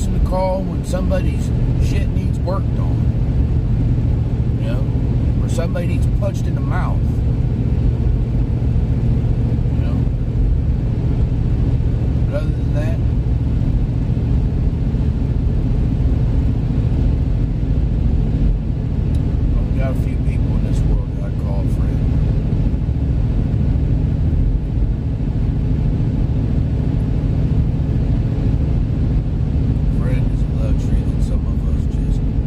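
Steady low road and engine rumble inside the cabin of a moving car, with a few faint short sounds over it.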